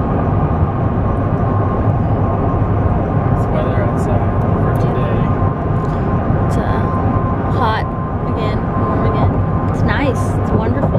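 Steady road and engine noise heard from inside a moving car's cabin, a low rumble with a thin steady hum running through it. A few short voice sounds come in about four seconds in and again near the end.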